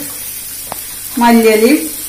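Shredded vegetable masala frying steadily in an aluminium kadai, with a single sharp click about two-thirds of a second in.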